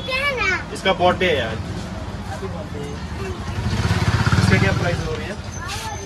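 A motor vehicle's engine passes close by, swelling to its loudest about four to five seconds in and then fading. Voices are heard at the start.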